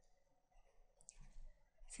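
Near silence: faint room tone with one brief, faint click about a second in.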